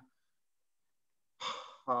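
Silence for over a second, then a short in-breath, a man drawing breath before he speaks again.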